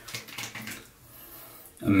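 A man sniffing briefly through his nose, a faint breathy sound in the first second.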